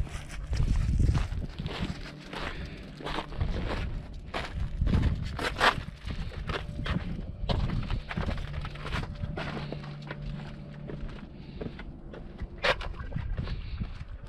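Footsteps scuffing and crunching on sandstone and grit while walking down over rock: an irregular run of steps and scrapes.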